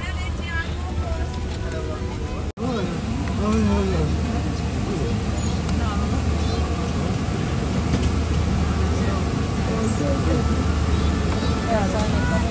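Airliner cabin ambience: a steady low hum, with passengers' voices chattering indistinctly in the background.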